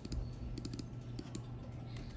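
Computer keyboard typing: a quick run of key clicks in the first second and a half, over a low steady hum.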